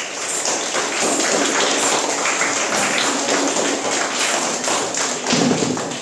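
Ghungroo ankle bells jingling, with bare feet tapping on a concrete floor as a Bharatanatyam dancer moves. It is a dense, steady rattle of many quick taps and jingles.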